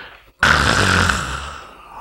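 A man's loud, breathy exhalation close to a headset microphone. It starts suddenly about half a second in and fades away over about a second and a half.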